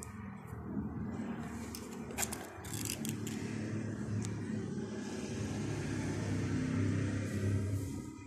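A low mechanical rumble, like an engine running, swelling over several seconds and falling away at the end, with a few sharp clicks about two to three seconds in.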